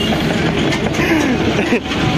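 Loud, steady running noise and rattle of a vehicle driven along a rough street, heard from inside its open metal cargo bed, with the body clattering.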